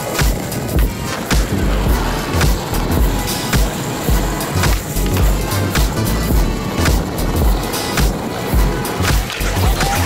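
Skateboard wheels rolling over rough concrete pavement, under background music with a steady beat.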